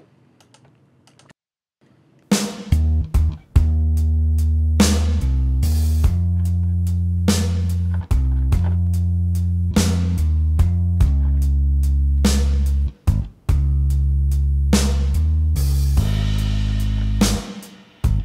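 Playback of a song mix with a sampled electric bass, played in by MIDI as a virtual instrument, and a drum kit, starting about two seconds in. The bass notes land with the kick drum hits and add small embellishments in between.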